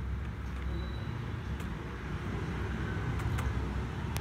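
Steady low background rumble, with a quick pair of faint clicks about three seconds in.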